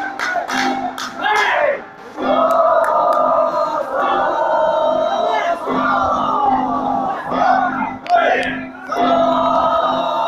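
A group of hatagashira bearers shouting chants together in phrases about a second long, each followed by a short pause. Sharp percussion strikes sound in the first second or two.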